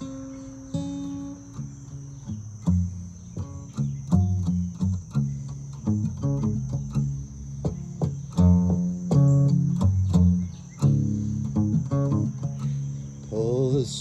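Acoustic guitar played with a bottleneck slide: plucked notes and slid chords as an instrumental introduction, getting fuller about halfway through. A steady high chirring of insects runs behind it.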